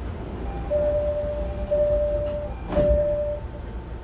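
Door-closing chime and sliding passenger doors of a 209 series 500 commuter train: a steady mid-pitched tone sounds three times, and the doors shut with a knock near the end of the second tone.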